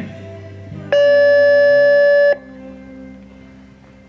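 Show jumping arena's electronic start signal: one loud, steady buzzer tone about a second and a half long that cuts off sharply, the signal for the rider to begin the jump-off round.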